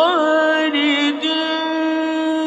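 A single voice in melodic Quran recitation (tajweed). It makes a quick upward turn and then holds one long, drawn-out note with slight ornamental wavers.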